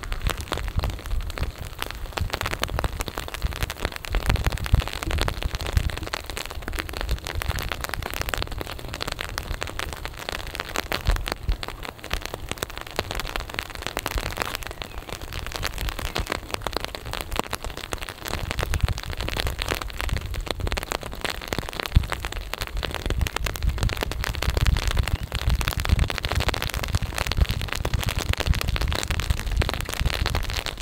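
Rain falling steadily, a dense crackle of drops on wet paving and boardwalk, with uneven low rumbling underneath.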